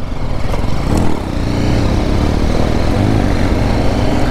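BMW G 310 GS single-cylinder engine pulling the bike along at low speed over bare rock, the revs rising and falling twice.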